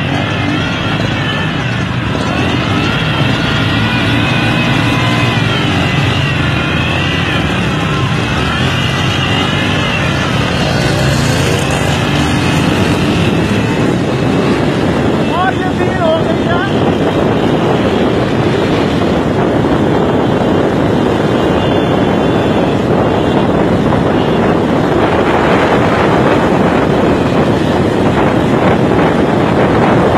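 Engines of auto rickshaws and motorcycles running at speed in a road race, with a heavy rush of wind over the microphone that thickens in the second half. Voices call out during the first ten seconds or so.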